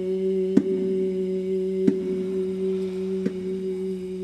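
A low drone note held perfectly steady, with a small baby bongo struck three times, about once every second and a half, over it.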